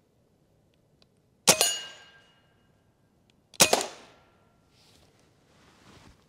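Two shots from a 9mm AEA Terminator air rifle, about two seconds apart. Each is a faint, quiet report followed by a much louder clang of the bullet hitting a steel target, which rings briefly.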